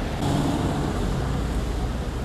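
Road traffic: a steady low rumble of vehicles passing on the road, growing a little louder about a quarter second in.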